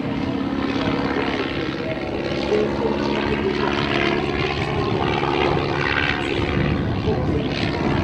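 De Havilland Tiger Moth biplane's four-cylinder inverted inline engine and propeller in flight, running steadily with the engine note shifting in pitch as it flies aerobatics.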